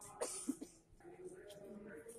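A person coughing, with two short bursts in the first half-second, then faint voices in the background.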